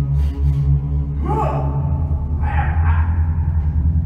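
Sustained low orchestral drone from a live theatre orchestra, with a performer's gasping cry about a second in that rises and falls in pitch. A second, breathier vocal outburst comes near three seconds.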